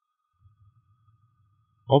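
Near silence: faint background hum with a faint thin steady tone, then a man's narrating voice begins right at the end.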